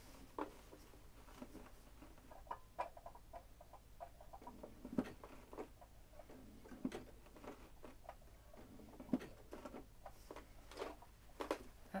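Faint, irregular clicks and rustles of slow free-motion stitching on a home sewing machine, with the fabric shifted under the hands to travel across the design.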